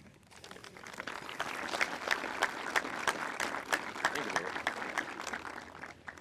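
Audience applauding: the clapping builds over the first couple of seconds, holds, and dies away near the end.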